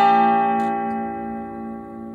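Acoustic guitar's last chord of the song ringing out, its notes slowly fading away. There is a faint click about half a second in.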